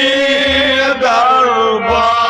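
A man sings long held notes in a Kashmiri Sufi folk song, the pitch breaking and bending about a second in. Harmonium and low drum strokes accompany him.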